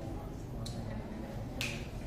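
Whiteboard marker clicking: a faint sharp click and then a louder one about a second later, over a steady low room hum.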